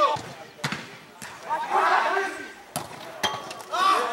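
A football being kicked several times on an artificial-turf pitch: about five sharp knocks spread over a few seconds, amid players' shouts.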